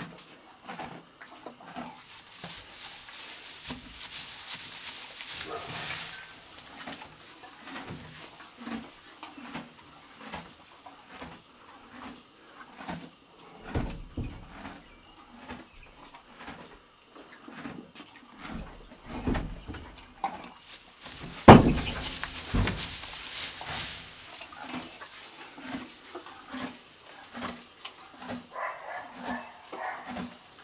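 A mare moving about in a two-horse trailer: many short, soft sounds every half second to a second, two spells of rustling, and one sharp, loud knock a little past two-thirds of the way through.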